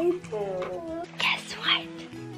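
A young child's voice in a sing-song, gliding tone, followed by breathy whispered sounds about a second in, over background music with held notes.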